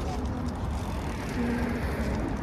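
Steady low rumble of city street noise, with a brief fragment of a voice a little past halfway.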